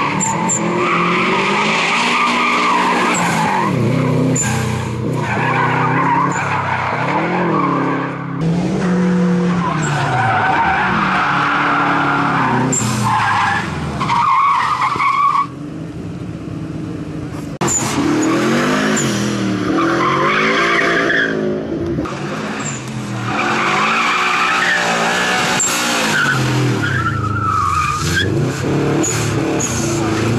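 Subaru Impreza GT's turbocharged flat-four engine revved hard, its pitch rising and falling again and again as the car slides on loose gravel, with tyres scrabbling and skidding. For about two seconds just past the middle the sound drops quieter before the revving picks up again.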